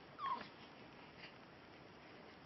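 Two-week-old baby making a brief high squeak that falls in pitch just after the start, then a fainter short sound about a second later.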